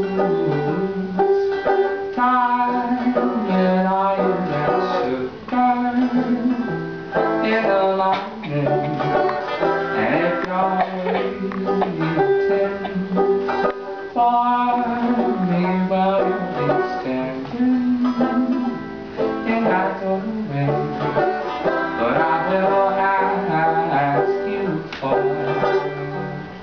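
Banjo played live, a repeating pattern of plucked chords.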